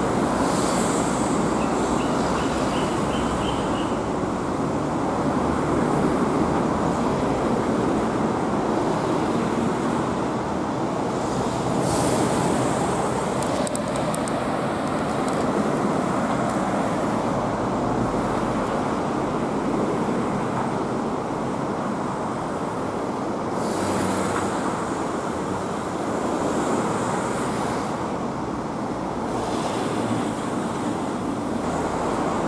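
Steady road traffic noise: cars passing on a multi-lane road, an even rushing of tyres and engines. A short run of faint high chirps comes about two seconds in.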